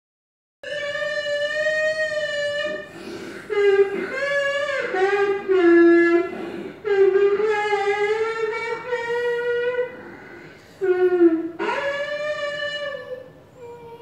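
A young child singing into a toy karaoke microphone: a long held note, then a string of shorter notes that waver up and down in pitch, with no clear words.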